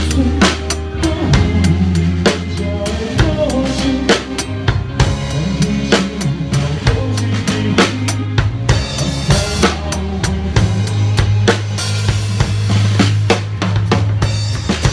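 Drum kit played with sticks in a live rock band, heard close up from behind the kit: a steady bass-drum and snare beat with cymbal washes, over the rest of the band.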